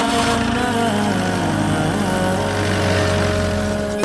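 A jeep's engine starts about half a second in and runs with a low, steady rumble, under held notes of background music.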